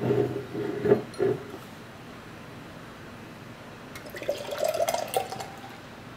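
A brief low sound in the first second and a half, then beer poured from an aluminium can into a glass mug, splashing and fizzing, from about four seconds in.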